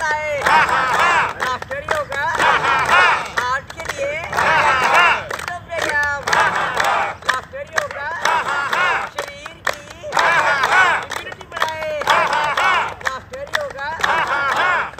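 A group of men and women laughing out loud together in laughter-yoga fashion, in loud bursts of many voices every second or two, with hands clapping.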